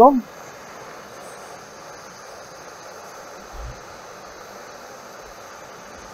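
Handheld gas torch on a disposable canister burning with a steady hiss as it heats a copper pipe joint for soft soldering. There is a brief low thump about three and a half seconds in.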